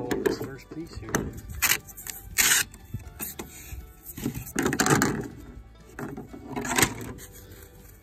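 A cut strip of gel-coated fiberglass boat deck being pried up with a screwdriver and torn loose from the flotation foam beneath: a series of irregular scrapes and cracks, about half a dozen, with background music.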